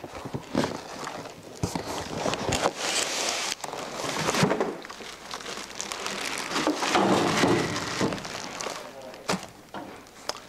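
Rustling of a cardboard box and crinkling of a plastic bag as a boxed welder in its plastic wrap is lifted out and set down, with a few short knocks.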